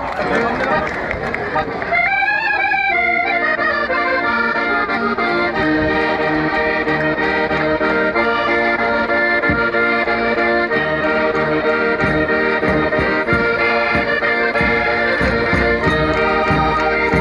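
Several Minho diatonic button accordions (concertinas) playing a traditional folk tune together, with held chords over a steady, repeating bass rhythm. Crowd noise mixes in during the first couple of seconds, and the accordions come through louder and cleaner from about two seconds in.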